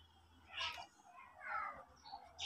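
Faint animal calls in the background: a short call about half a second in, then a longer call falling in pitch about a second and a half in.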